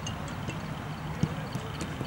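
A few scattered short thuds of footballs being struck over the steady outdoor hum of a training pitch.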